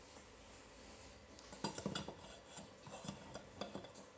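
Light clinking and clattering of small hard objects being handled on a workbench, starting about a second and a half in and coming in a quick irregular series.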